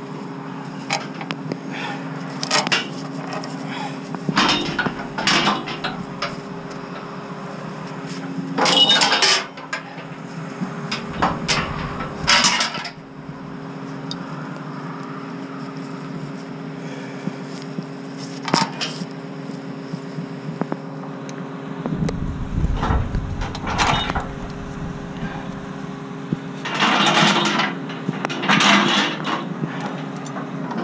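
Heavy steel chain clinking and rattling as it is handled, looped and hooked onto steel fittings, in scattered bursts, loudest near the middle and again near the end. A steady low hum runs underneath.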